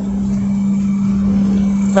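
A steady low machine hum with a single held tone, over a low rumble.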